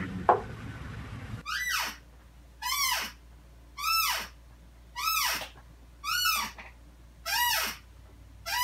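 A squeak repeating about once a second, each a short pitched glide that falls away, typical of a creaking office chair rocked back and forth.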